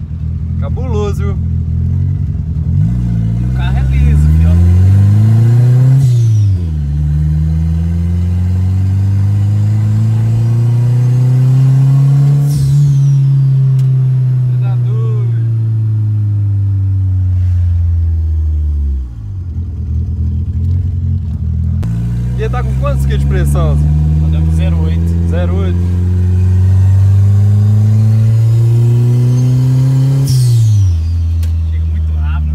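Turbocharged VW Voyage's four-cylinder engine heard from inside the cabin, accelerating hard: the revs climb and drop sharply at gear changes about three and six seconds in, then make a long pull that eases off around the middle, and climb again near the end. Each lift-off is followed by a short falling whistle.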